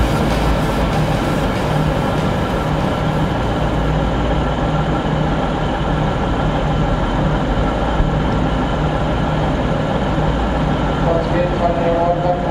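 V/Line VLocity diesel railcar idling steadily: a constant low engine hum with faint steady higher tones.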